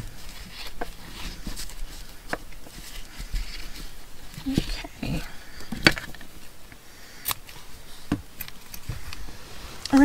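Scissors snipping the ends of fabric scraps tied onto a paper index card, among soft rustling of fabric and card; a few sharp clicks, the loudest about six seconds in.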